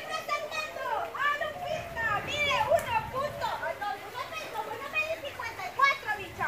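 Overlapping voices of people, children among them, chattering and calling out while playing in and around a swimming pool.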